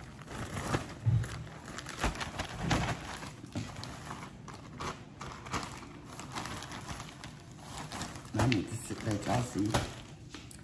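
Plastic zip-top storage bag full of seasoned oyster crackers crinkling and rustling in irregular bursts as it is handled and opened.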